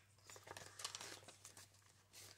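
Faint crinkling and rustling of a clear plastic binder pocket and paper bills being handled, a string of small crackles that stops shortly before the end.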